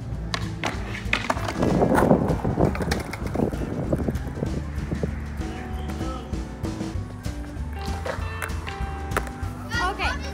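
Skateboard wheels rolling over concrete with a child lying on the board after a push, loudest about two seconds in. Background music plays throughout.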